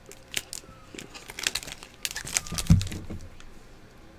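Foil trading-card pack wrapper crinkling and crackling in the hands as it is opened and the cards come out, with a soft thump a little before three seconds in.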